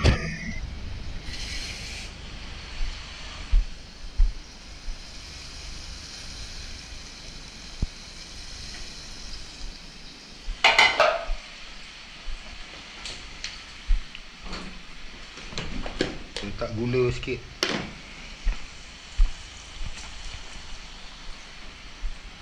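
Food frying in a pan with a steady sizzle, broken by scattered clicks and knocks of dishes and utensils and a louder clatter about halfway through.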